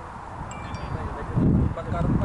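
Wind buffeting the microphone in low rumbles, louder in the second half. About half a second in there is a brief high, clear chime-like ringing of a few tones together.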